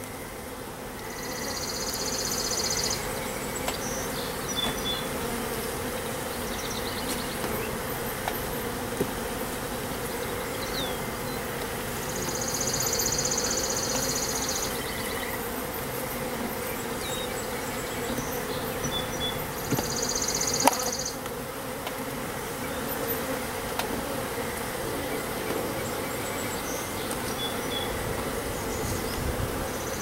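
Honey bees buzzing around an open hive, a steady low hum. A high trill comes and goes three times, each about two seconds long, and a single sharp knock sounds about two-thirds of the way through.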